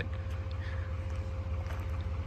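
Steady low rumble with a faint steady hum above it: outdoor background noise on a phone microphone.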